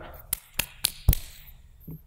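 Four quick, sharp hand slaps about a quarter second apart: palms brushed together in a dusting-off gesture.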